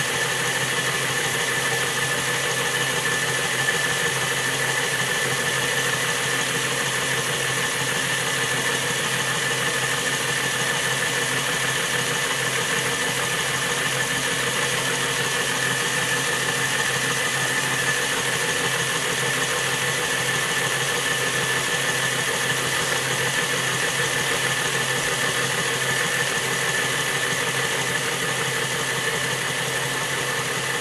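Hornby model of a Princess Coronation Class steam locomotive running flat out on a rolling road: the electric motor and gears give a steady whir, with a thin high whine, while the driving wheels spin on the rollers.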